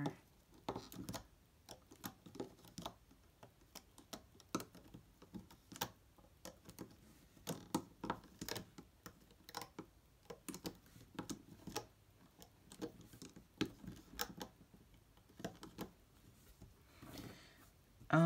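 Faint, irregular clicks and taps of a plastic loom hook and rubber bands against the plastic pegs of a Rainbow Loom as bands are hooked and pulled over the pegs.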